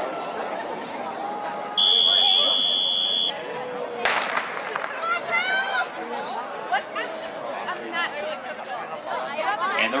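A steady high tone lasting about a second and a half, then a single sharp starting-pistol shot about four seconds in that starts the race, followed by spectators' voices calling and cheering.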